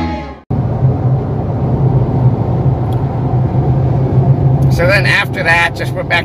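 A live rock band playing, cut off about half a second in, followed by the inside of a moving car on a highway: a steady low engine and road hum. A man's voice starts near the end.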